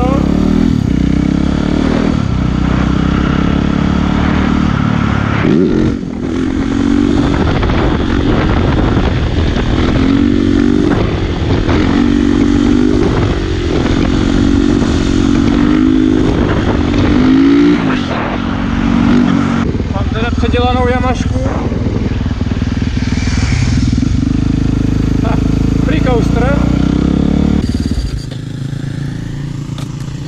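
Yamaha supermoto motorcycle engine under way, revved up and down again and again as the bike is lifted into a wheelie. Near the end it drops to a quieter running note as the bike comes to a stop.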